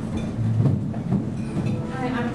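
Handheld microphone being handled as it is passed from one person to another: low rumbling handling noise with a few bumps.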